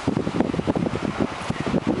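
Wind buffeting the camera microphone: an uneven low rumble in gusts.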